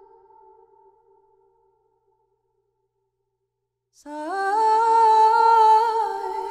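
Music playback of a sampled wordless female vocal: a held note fades away in its reverb tail over the first second and a half, then there is silence. About four seconds in, a new loud held note slides up in steps and settles.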